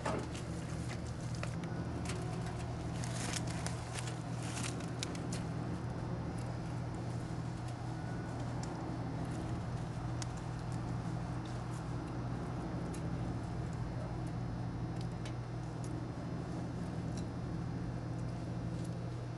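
A steady low hum with faint scattered clicks and ticks, most of them in the first few seconds.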